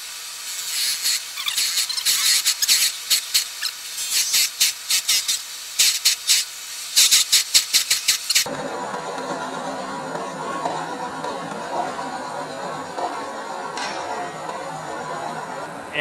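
A drill bit fed from the lathe tailstock boring into a spinning epoxy resin blank at low speed, making rapid, irregular high-pitched squealing and scraping strokes. After about eight seconds the cutting stops abruptly and only a lower, steady running noise remains.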